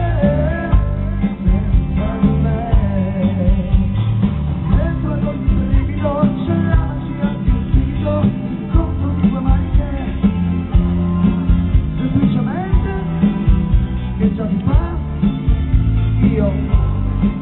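Live pop-rock band playing loud, with a male lead singer on a microphone over a strong, steady bass-and-drum beat and guitar, recorded from the audience.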